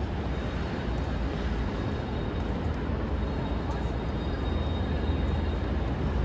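Busy city street traffic noise: a steady low rumble of vehicles with a constant hum, no single event standing out.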